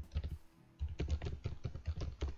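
Typing on a computer keyboard: a quick run of keystrokes, a brief pause about half a second in, then more keystrokes.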